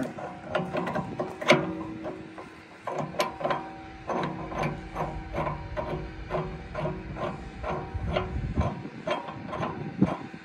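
Steel screw-pin shackle being fitted to a backhoe's lifting point, its threaded pin screwed in by hand. Metal clicks on metal as it turns, about three light clicks a second, with a louder clank about a second and a half in.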